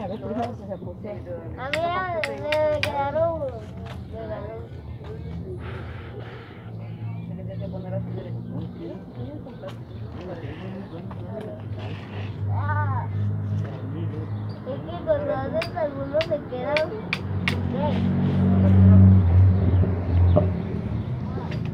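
Street sound with scattered voices and the low rumble of a motor vehicle's engine, growing louder toward the end as it comes close.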